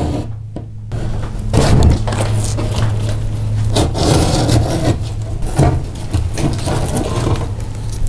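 Retractable utility knife blade drawn repeatedly through drywall, a rough scraping cut that runs on in irregular strokes after about a second, over a steady low hum.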